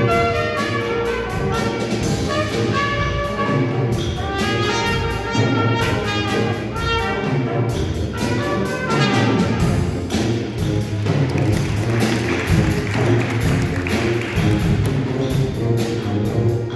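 School jazz band playing a tune, with trumpets, trombones and saxophones over a drum kit keeping a steady beat. The ensemble gets fuller and brighter about ten seconds in.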